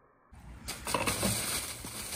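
Rustling and crunching as compost material, dry brown leaves and green vegetable scraps, is dumped onto a leaf pile. It starts suddenly about a third of a second in and carries many small crackles.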